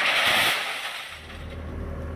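Sheets of plate glass falling from a trailer rack and shattering on pavement, a spray of breaking glass that fades out within about a second. After that a heavy vehicle's engine idles with a steady low hum.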